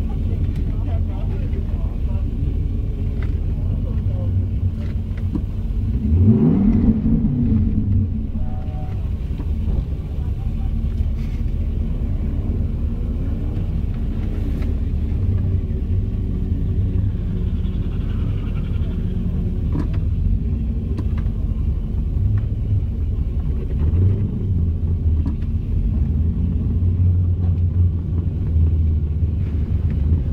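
Holden VZ SS Ute's 5.7-litre V8 idling, heard from inside the cabin as a steady low rumble. About six seconds in the revs rise and fall once in a short blip.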